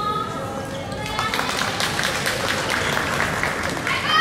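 Voices calling out in a gymnasium at a basketball game: a drawn-out shout falling in pitch right at the start, then a steady din of voices with many short, sharp sounds mixed in.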